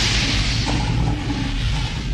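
Fire sound effect from an animated title sequence: a steady rushing hiss of flames over a low rumble.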